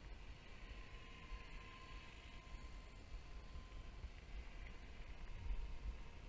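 Faint, steady high whine of a radio-controlled model helicopter flying at a distance, under a low, uneven rumble on the microphone that swells near the end.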